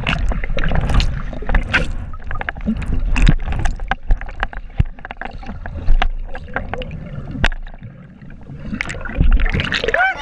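Water sloshing and bubbling around a submerged camera held by a swimmer: a muffled low rumble with many sharp clicks and knocks. It is quieter for a moment about eight seconds in.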